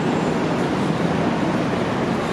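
Steady city street traffic noise, with a low engine hum running under it.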